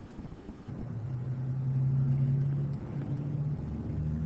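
A low, steady engine-like hum that comes in about a second in, swells, breaks off briefly near three seconds, and then resumes.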